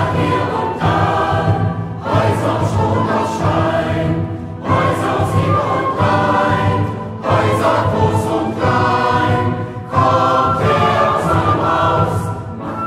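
Large mixed choir singing in full chords with a steady low accompaniment, in phrases that swell anew about every two and a half seconds, in a large church.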